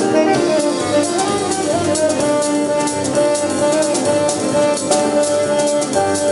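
Jazz quintet playing live: a saxophone carries long held melody notes over drum kit, electric bass and keyboard.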